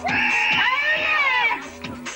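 Rave dance music played from vinyl turntables through a sound system. Its lead is a high line of long held notes that arch up and fall away, over a short repeating low pattern.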